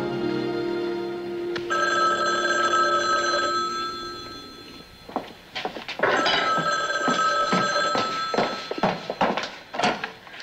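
Telephone bell ringing twice, each ring lasting about three seconds. A few short knocks from kitchen work come between and under the rings.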